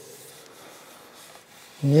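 Faint rubbing of hands over a smooth pear-wood sculpture as it is handled, followed by a man starting to speak near the end.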